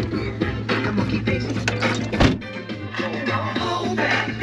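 Music with a steady beat playing over a car stereo tuned to 92.9 FM, the pirate station's broadcast, with one sharp thump about two seconds in.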